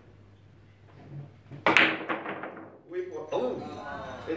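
A carom billiards shot: a sharp clack of the balls about a second and a half in, followed by a quick run of smaller clicks that die away over about a second.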